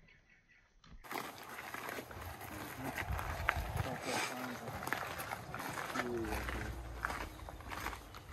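Footsteps crunching on a gravel walking track as people walk along it, starting about a second in after near silence.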